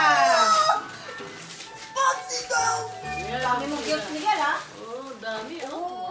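Family members' voices talking and exclaiming, a high excited voice at the very start, with music in the background.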